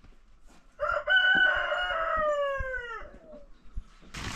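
A rooster crowing once: one call of about two seconds, held steady and then falling in pitch at the end.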